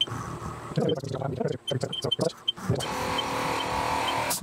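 Knocks and short clicks in the first couple of seconds, then a steady motor whir from about three seconds in: the axis drives of a Haas CNC mill jogging the table.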